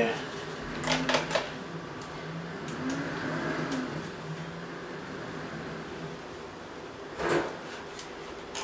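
Plastic and metal clicks and scrapes of a Phottix wireless flash transmitter being slid into a camera's hot shoe, a short cluster of clicks about a second in.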